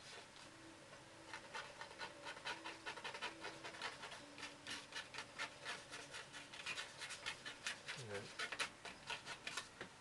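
A small card scraped across wet watercolour paint on paper in quick, repeated short strokes, about three or four a second, starting about a second in. It is lifting paint out to shape the stones of a dry-stone wall.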